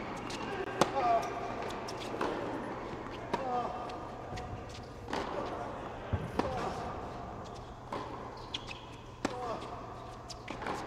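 Tennis rally on an indoor hard court: the ball is struck and bounces about once a second or so, sharp hits echoing in the hall, with short squeals from players' shoes on the court surface several times.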